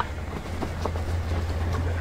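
Mountain bike rolling over a rocky dirt trail: a steady low rumble with scattered clicks and rattles from the tyres and bike.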